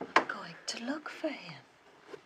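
A short sharp sound right at the start, then hushed, whispered speech between two people that fades out near the end.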